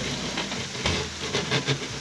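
Wet fine-mesh waring fishing net rustling as it is handled and shaken over a plastic tub, with water hissing and trickling off it, over a steady low rumble.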